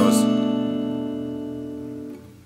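Steel-string acoustic guitar strummed once on a B minor chord, the chord ringing and slowly fading away.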